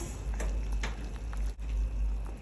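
Water bubbling in a stainless steel saucepan of hot dogs, the burner just turned off, with a few faint light ticks.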